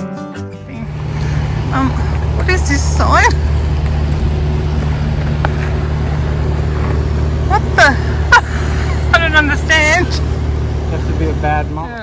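Steady low hum of a vehicle engine running, with a few brief voices over it.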